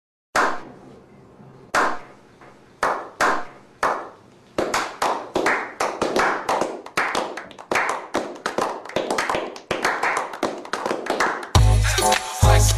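A few people giving a slow clap: single claps about a second apart at first, quickening from about four seconds in into fast, steady applause. A music track with a heavy bass beat cuts in just before the end.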